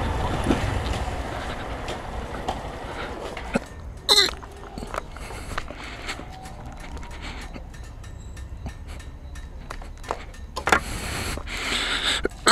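Motorcycle riding noise fading away as the bike slows to a stop, leaving a low, steady rumble. A brief human vocal sound, like a cough, comes about four seconds in.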